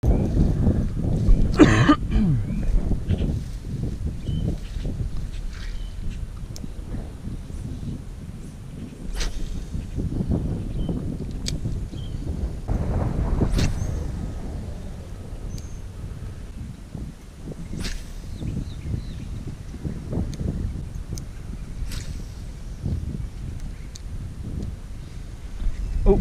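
Wind rumbling on an outdoor camera microphone, with scattered sharp clicks.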